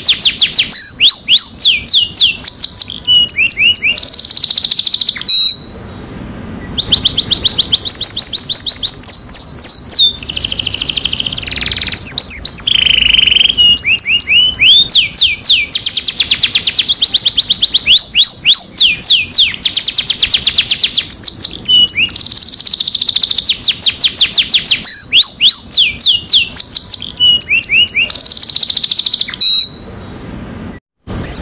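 Domestic canary singing a long song made of fast trills of repeated downward-sweeping notes, phrase after phrase, with a brief pause about six seconds in.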